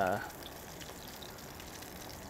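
Beer-battered skewers deep-frying in a Dutch oven of hot vegetable oil: a steady sizzle and bubbling of the oil.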